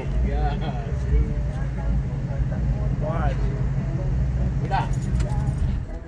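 A vehicle engine idling with a steady low hum, heard from inside the cab through an open window, with faint voices over it. The hum thins out near the end.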